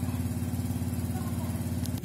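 Small motorcycle engine idling steadily, with an even, rapid pulse.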